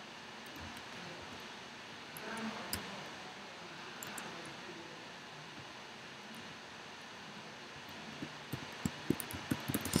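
Faint steady background hiss with a few isolated clicks, then a quick run of computer keyboard keystrokes over the last second or two.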